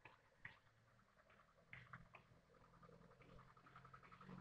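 Near silence, with a few faint short clicks.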